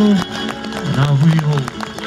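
Live Hawaiian music with guitar and a singer's held note ends just after the start, followed by a lower-level stretch with a voice briefly heard about a second in.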